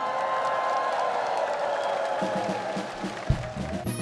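A large audience applauding and cheering over a band's last held notes. About two seconds in, the intro of the next trot song starts with a bass and drum beat.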